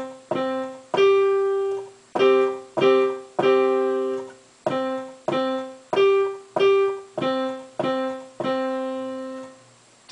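Digital piano playing a slow beginner's tune on just two notes, middle C and the G above it, one at a time and sometimes together. About fourteen plain notes, a few held for about a second, ending just before the end.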